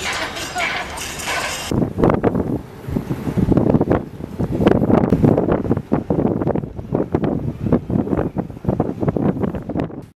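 Outdoor ambience with wind on the microphone, cut off abruptly about two seconds in; after that a person speaking.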